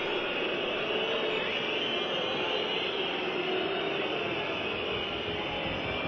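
Steady crowd noise from a large football stadium: a continuous even roar from thousands of fans, with no single event standing out.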